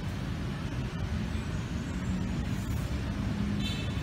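Steady low rumble of city road traffic, with a brief high-pitched chirp near the end.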